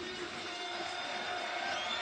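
Steady background noise of a football stadium crowd picked up by the pitchside microphones, with a faint held tone running through it.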